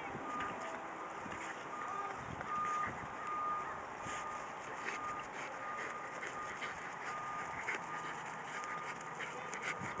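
A Russell terrier digging in loose soil, its front paws scraping and throwing dirt in quick, irregular strokes. A faint high beep repeats in short dashes behind it.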